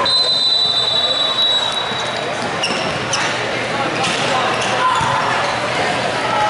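A referee's whistle blows one long steady blast of about two seconds to start play. Then the futsal ball is kicked and shoes squeak on the hardwood court, with voices echoing around the sports hall.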